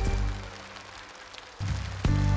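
A live trot band's chord, struck with a cymbal hit, dies away to a soft lull with faint high cymbal shimmer. About one and a half seconds in, low bass notes enter, and at the end the band comes back loudly with piano.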